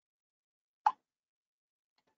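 A single short, sharp pop a little under a second in.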